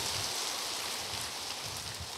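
A steady, soft hiss of even noise with no words.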